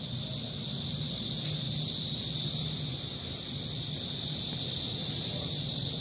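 A steady high-pitched hiss over a faint low hum.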